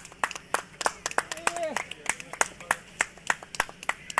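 A small group of people clapping: quick, uneven hand claps, several a second, with a short shout of a voice about midway.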